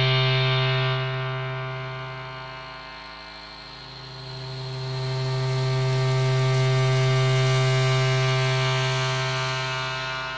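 Synthesizer drone from FrozenPlain's Mirage sampler playing its 'Feedback Loops' atmosphere preset: a sustained low chord with many held overtones that fades to a dip about three and a half seconds in, then swells back up and starts to fade again near the end. The filter cutoff is being turned, so the brightness of the upper overtones shifts.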